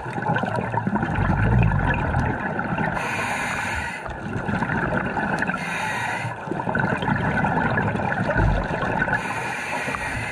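Scuba breathing heard underwater through the camera diver's regulator: hissing inhalations alternating with gurgling bursts of exhaled bubbles, with a low bubbling rumble about a second in and again near the end.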